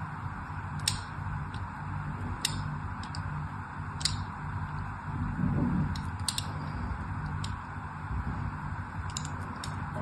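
Thin blade scoring criss-cross lines into a bar of soap: short, crisp scratches spread irregularly a second or two apart, over a steady background hiss.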